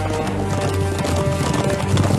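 Horses' hoofbeats, a rapid run of strikes from mounted riders, under loud background music with sustained tones.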